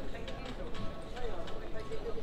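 Footsteps on a paved street at walking pace, hard sharp steps, with passers-by talking.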